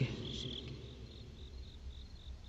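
Faint cricket chirping: a short high chirp repeated about four times a second, with a longer chirp near the start, over a low steady rumble.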